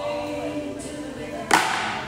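A 14-pound medicine ball (wall ball) dropped onto a rubber gym floor, landing with one sharp thud about one and a half seconds in, over background music with singing.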